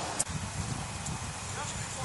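A sharp click about a quarter second in, then a low, irregular rumble of wind buffeting the microphone.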